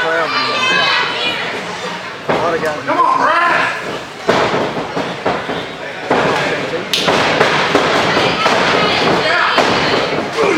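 Spectators shouting and calling out around a wrestling ring, broken by several sudden thuds and smacks of wrestlers striking each other and hitting the ring mat. The sharpest impact comes about seven seconds in.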